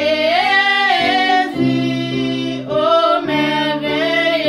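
A woman singing a gospel song over backing music of steady held chords that change about once a second.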